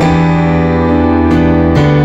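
Stage keyboard playing a worship-song accompaniment in a piano voice: held chords, with a new chord struck at the start and another near the end.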